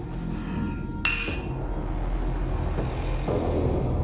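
Two drinking glasses clink together once in a toast about a second in, leaving a short bright ring. A low music score plays underneath throughout.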